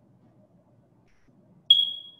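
A single high-pitched electronic ping near the end, starting sharply and ringing out as it fades over about half a second, after a stretch of near silence.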